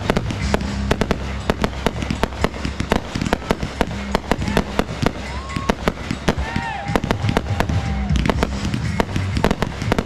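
Aerial fireworks going off in quick succession, a dense run of sharp bangs and crackles, over loud country-rock band music played through loudspeakers.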